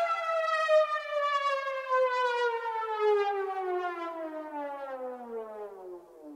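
A siren-like sound effect in a hip-hop scratch remix: one long, slightly wavering tone with rich overtones, sliding slowly and steadily down in pitch, like a siren winding down.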